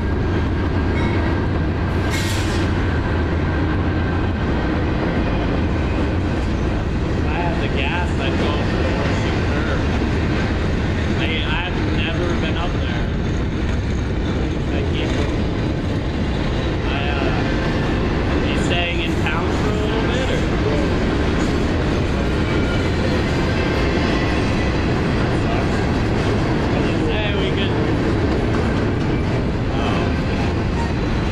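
Freight cars of a mixed train rolling past: a steady rumble of steel wheels on rail, with a sharp click a couple of seconds in and scattered short higher-pitched sounds.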